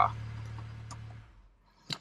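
BMW N54 twin-turbo inline-six idling with a steady low hum, then switched off a little over a second in, the sound dying away to near silence with a faint tick.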